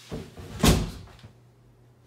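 A light knock, then a loud thump about half a second later that dies away quickly.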